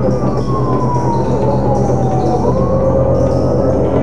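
Police car siren wailing, its pitch sliding slowly down and then turning to rise again about two and a half seconds in, over background music with steady low sustained tones.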